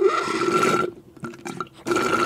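Beer being sucked up through a straw from a glass mug, heard as loud slurping in two bursts: one lasting about the first second, and another starting near the end.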